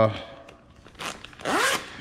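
Tear strip of a FedEx Large Pak courier envelope being pulled open, ripping along the seam. There is a short rip about a second in, then a longer one that fades just before the end.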